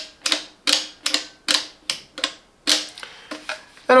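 A run of about nine sharp plastic clicks, roughly two a second and thinning out near the end, from a Parkside PFS 450 B1 HVLP paint spray gun being worked in the hand.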